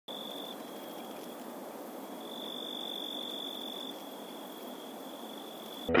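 A steady high-pitched tone that swells and fades slightly, over a constant hiss. Loud guitar music cuts in at the very end.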